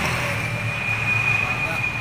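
A steady, low, engine-like hum with a faint, thin, high-pitched whine over it.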